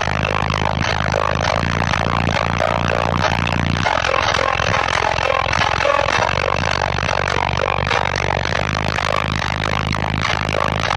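Four Deaf Bonce Machete subwoofers on a Taramps 8K amplifier playing loud, sustained bass notes inside an SUV's cabin, the notes shifting about four seconds in.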